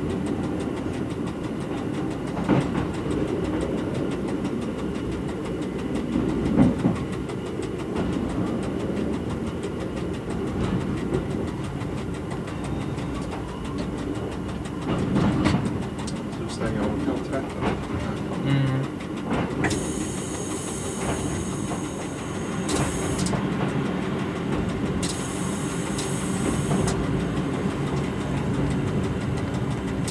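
Volvo diesel engine of a rebuilt Y1 railcar running steadily as heard in the driver's cab, with wheels clicking over rail joints and points. In the second half a high shrill sound comes and goes in several bursts.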